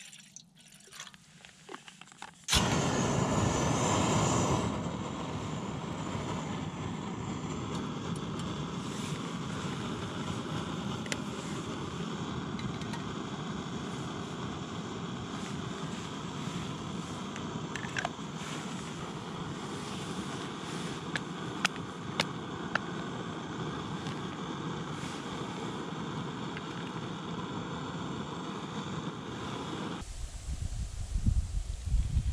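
Faint trickle of water poured into a pot, then a canister gas camping stove lit with a click about two and a half seconds in; its burner runs with a steady hiss under the pot, louder for the first two seconds and then even. A few light metal clicks now and then.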